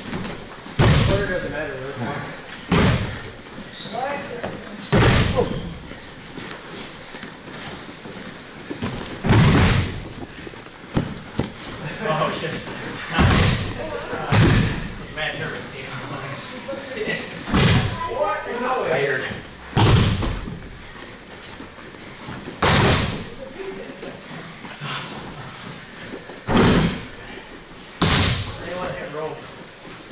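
Judoka being thrown and breakfalling onto the tatami mats: about a dozen heavy slams at irregular intervals, one to four seconds apart.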